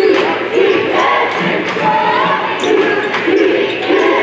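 Crowd noise in a basketball arena, voices shouting and chanting, with the thumps of a basketball being dribbled on the hardwood court.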